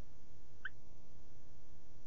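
Steady low hum of the recording's background, with one brief high squeak or click about two-thirds of a second in.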